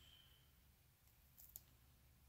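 Near silence, broken by a few faint, short crackles of a clear plastic bag flexing under the fingers, a little past halfway.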